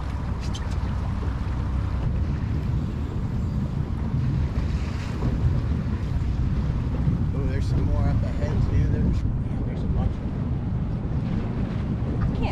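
Steady wind buffeting the microphone on a small boat out on open water, with water washing around the hull underneath. Faint voices come through briefly about eight seconds in.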